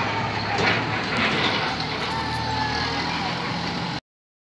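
Farm tractor engine running steadily as it pulls a dump trailer away, with a few sharp knocks over the engine sound.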